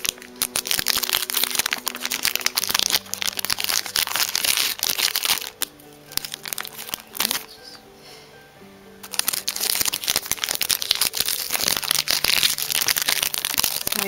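Background music with held notes, over the crinkling and rustling of a foil Pokémon trading-card booster pack being handled. The crinkling eases off for a few seconds in the middle, then starts up again.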